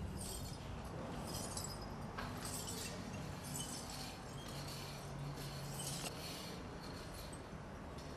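Broken glass crunching and clinking underfoot, in short irregular crunches about once a second, from shattered windows in a shell-damaged building.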